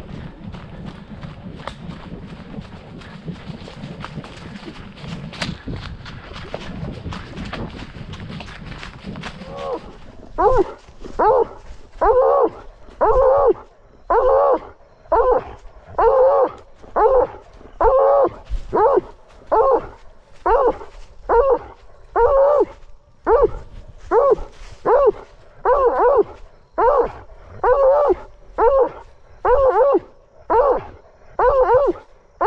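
A blood-trailing hound baying a wounded buck that has stopped and stands at bay: loud, evenly spaced bays, a little over one a second, each bending up and down in pitch, heard right at a collar-mounted camera. They begin about ten seconds in, after a steady rushing noise while the dog is on the move.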